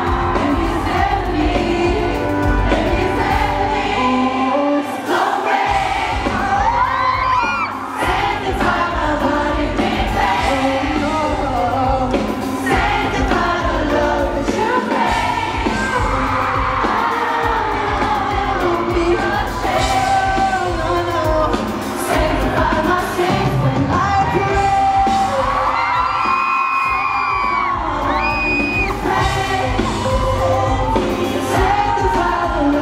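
Live pop music from a concert sound system: a male lead singer sings over a full band with a steady beat, recorded from the audience.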